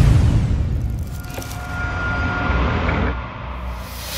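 Cinematic logo-intro sound effect: the deep rumble of a boom dying away, then a soft swelling rush with a faint high steady tone that fades out.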